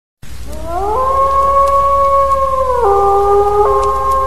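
Wolves howling, a horror-intro sound effect. One long howl glides up, holds level and steps down slightly, and a second howl joins it near the end.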